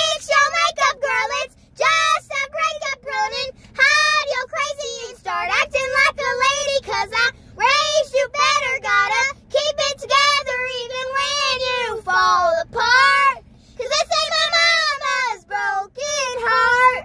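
Two young girls singing a country song together, unaccompanied, in phrases broken by short pauses for breath.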